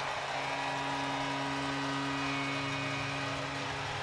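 Arena goal horn sounding one steady low chord throughout, over a haze of crowd noise.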